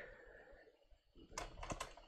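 A few computer keyboard keystrokes about a second and a half in, after a near-silent stretch.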